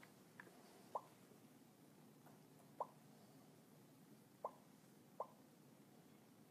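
Near silence with faint room hiss, broken by about five short, faint clicks at uneven gaps.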